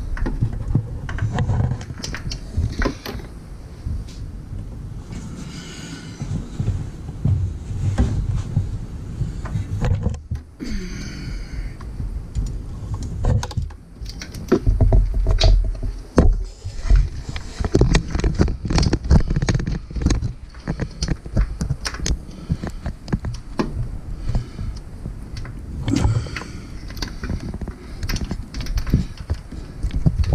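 Hand tools working a hard-to-reach bolt: a stream of irregular ratchet clicks and metal knocks and clanks, with a short lull about ten seconds in and a busier run of knocks around the middle.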